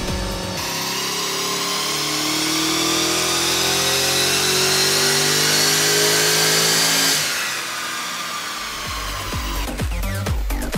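HSV E2 GTS V8, still on its stock exhaust, at full throttle on a chassis dyno. Its pitch climbs steadily for about six seconds as it pulls to around 5,900 rpm, then the throttle closes and the engine winds down. Electronic music comes back in near the end.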